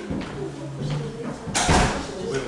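Indistinct voices in a room, with a sudden loud noise about one and a half seconds in that lasts under half a second.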